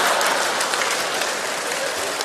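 Audience applause and laughter after a punchline, the noise slowly fading.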